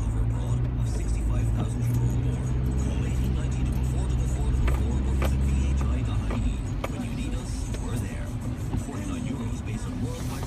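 Car engine and road drone heard from inside the cabin, a steady low hum that eases off about six seconds in, with a few light clicks and faint radio talk underneath.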